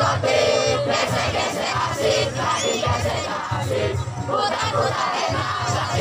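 A group of performers chanting and shouting a yel-yel cheer in unison, with a low beat running under the voices.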